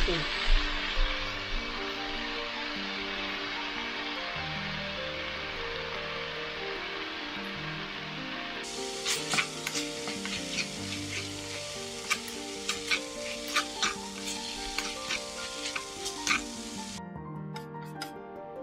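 Pork and wood ear mushrooms sizzling in a frying pan, with a spatula scraping and clacking against the pan as the mix is stirred. The clacks come thick and fast from about halfway through. Soft background music plays underneath.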